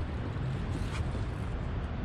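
Steady low background rumble, with a faint brief rustle about a second in.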